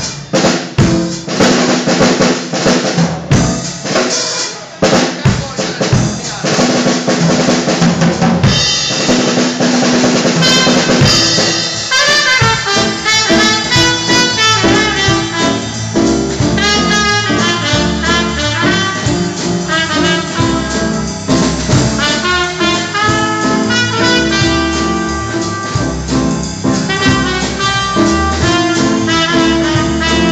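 Live swing-jazz band: a drum kit plays a busy break of snare, bass drum and cymbal hits for about the first eleven seconds, then a trumpet takes up the melody over the drums and band.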